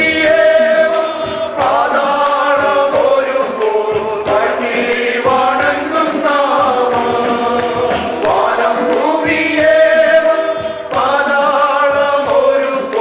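A group of men singing a Malayalam worship song together into microphones, holding long notes, over a light regular ticking beat.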